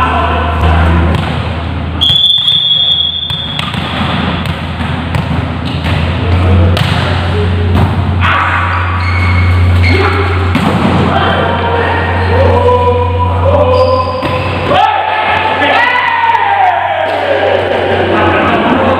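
Volleyballs being hit and bouncing on the court floor in a large hall, a run of repeated thuds over music and voices.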